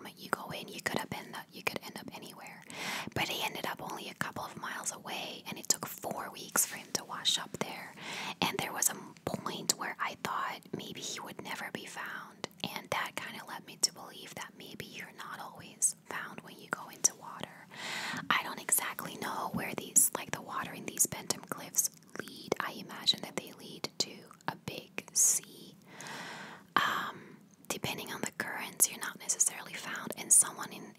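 A woman whispering close to the microphone, talking on with only brief pauses.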